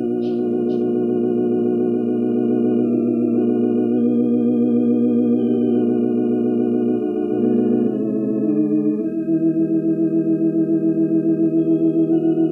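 Church organ playing slow, held chords, the chord changing about two-thirds of the way through, then pulsing evenly with a tremolo.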